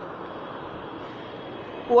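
Steady background hiss of the recording, with no other event, during a pause in a man's speech. His voice comes back in just before the end.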